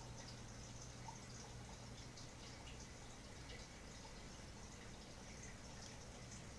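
Near silence: a low steady hum with a few faint light ticks from multimeter probe tips touching the circuit board. The meter reads open circuit and gives no continuity beep.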